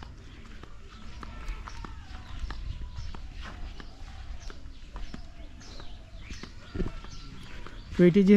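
Footsteps of a person walking over grass and bare earth, a string of light, irregular steps over a low steady rumble.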